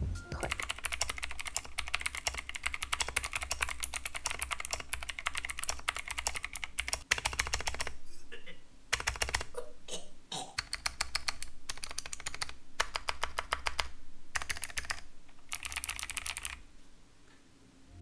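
Rapid typing on a budget mechanical keyboard fitted with cheap clicky blue switches and no plate: a dense stream of key clicks with a few short pauses, stopping shortly before the end.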